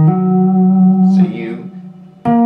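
Electric guitar note, sounded legato on the fretboard, held for about a second and then fading: the flat fifth being demonstrated in a tapped minor 7 flat 5 arpeggio.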